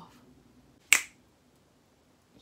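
A single sharp finger snap about a second in.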